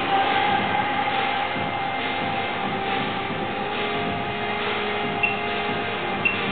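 Freight lift's traction machinery running, a steady mechanical rumble with a few held whining tones. One short high beep comes about five seconds in.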